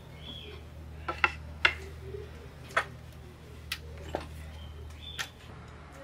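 A wooden sidewalk sign board being handled and folded: a series of sharp knocks and clicks, the loudest two about a second and a half in. A few short high chirps and a steady low hum lie underneath.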